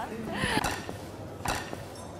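A woman laughing, with a sharp click about one and a half seconds in.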